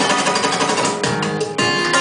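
Solo acoustic guitar played with fast, percussive strumming, sharp strokes several times a second over ringing chords, as a song gets under way.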